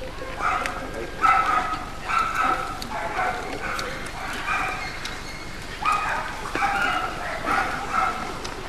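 Short, high-pitched yelping calls repeated about once a second, around ten in all.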